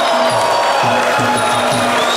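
Music: a held, wavering reedy wind melody over a steady drum beat.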